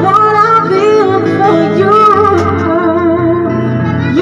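A singer with vibrato accompanied live on an electronic keyboard, the held bass notes under the voice changing a couple of times.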